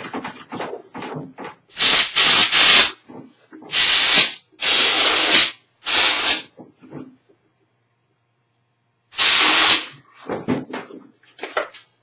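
A compressed-air blow gun fires five short bursts of hiss into the seam of a two-part plaster mold, driving the cast halves apart. Small knocks and scrapes from handling the mold pieces come between the bursts.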